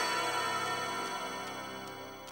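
Background music score: sustained chords that slowly fade, with faint ticks in the high end.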